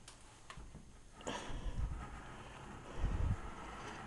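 Faint handling noise from a handheld camera being moved: a couple of small clicks about half a second in, then low rustling and soft low bumps about three seconds in.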